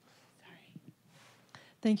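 Quiet room with faint whispered murmuring, then an audience member's voice starts loudly through a microphone near the end, saying "Thank…".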